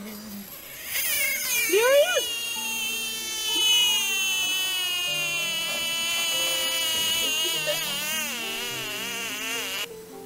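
American bullfrog giving one long, plaintive, high-pitched scream with a wavering pitch as it is handled, starting about a second in and lasting almost to the end. It is the distress call a grabbed bullfrog gives to startle and drive off an attacker.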